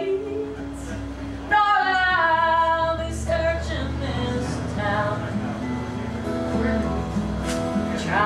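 A woman singing an Americana song in short sung phrases, accompanying herself on a strummed acoustic guitar.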